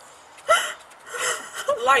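A short, sharp vocal burst, like a gasp, about half a second in. It is followed by faint voice sounds and then speech starting near the end.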